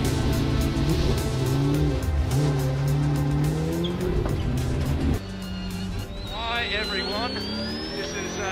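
Music with a steady beat for about the first five seconds. Then a V8 Supercar engine is heard from inside the cockpit, revving up in quick rising sweeps, with a high whine climbing steadily in pitch behind it.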